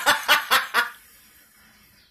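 A woman laughing in short rhythmic bursts, about four a second, that stop about a second in.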